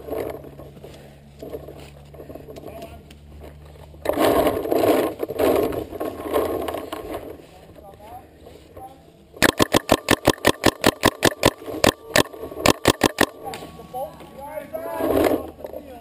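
Paintball marker (GOG eXTCy) firing a rapid string of about two dozen shots, roughly six a second with one short break, about ten seconds in. The shots are loud and sharp, from right at the barrel.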